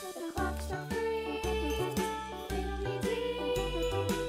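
Background music: a tune with a melody over a bass line that moves from note to note a few times a second.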